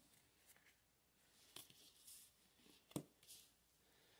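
Near silence, with a few faint soft clicks and rustles of oracle cards being slid and handled, the clearest one about three seconds in.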